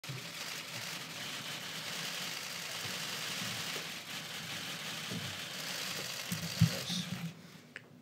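Press-room ambience: a steady hiss with a faint low murmur of people, and a few knocks and clicks about six to seven seconds in. It drops quieter in the last second.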